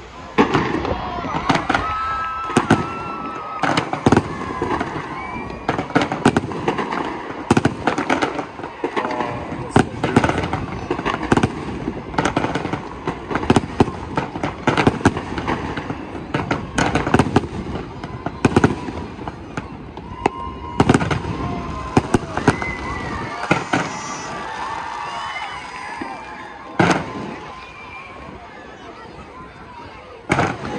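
Aerial fireworks going off in a rapid, continuous barrage of sharp bangs, thinning out near the end with one last loud bang.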